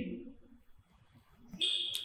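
A pause in speech: a voice trailing off, then near silence, then a brief high-pitched tone-like sound about one and a half seconds in.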